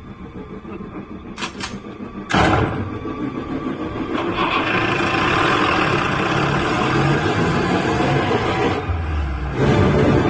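Tense film soundtrack: a low rumble, then a sudden loud hit a little over two seconds in, followed by a dense, swelling texture that builds and holds, dipping briefly just before the end.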